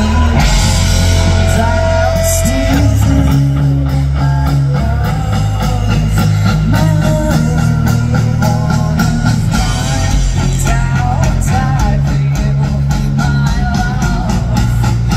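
A live rock band playing loudly through a PA system, heard from within the audience, with drum kit, bass, electric guitars and a woman singing.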